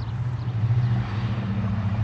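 Steady low engine hum, with a rush of noise that swells about half a second in and eases near the end.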